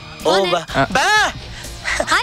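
A man's voice making wordless 'baa' calls, several in a row, each rising and then falling in pitch: the babbling of someone playing at being mute.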